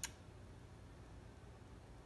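Near silence: room tone, with one short click right at the start.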